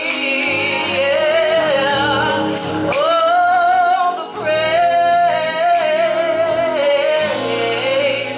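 Gospel choir singing, mixed female and male voices, holding long sustained notes.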